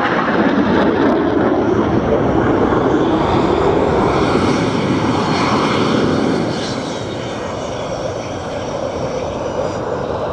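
Saab JAS 39C Gripen fighter's single Volvo RM12 afterburning turbofan heard during a display pass: a continuous loud rushing jet noise, with a faint high whine over it around the middle. The noise eases somewhat in the second half and builds again near the end.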